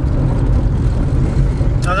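Steady low road and engine rumble heard inside a moving car's cabin, with no words over it until a voice starts near the end.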